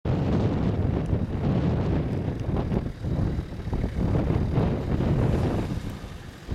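Wind buffeting the microphone, over the engine of a Nissan GQ Patrol four-wheel drive driving slowly across soft dune sand.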